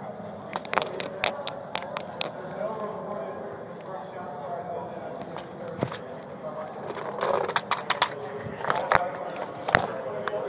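Clicks, knocks and scrapes of a body-worn camera jostling against a police officer's gear as he moves on hard paving, in two clusters: one in the first couple of seconds and one near the end. Indistinct voices run underneath.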